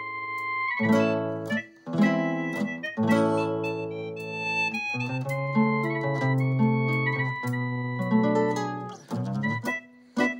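Tango backing track with chords struck about once a second, and an EWI (Vangoa electronic wind instrument) improvising over it in held high notes.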